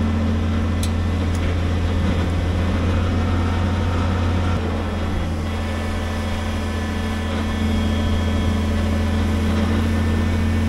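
A 6x6 wrecker's truck engine running steadily while its rotator boom lifts a tree stump, with a slight dip in level about halfway through before it picks up again near the end. Two faint clicks sound about a second in.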